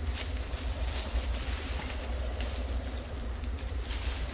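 Soft plastic rustling and handling noises, short and irregular, over a steady low hum.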